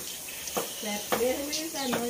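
Chicken pieces sizzling softly in a pot, under quiet background voices.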